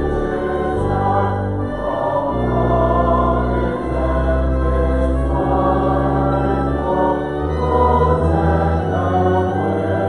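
Congregation singing a hymn together over held low accompanying notes.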